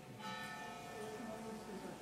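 A church bell struck about a quarter second in, its many overtones ringing on and slowly fading over the dying ring of the previous stroke.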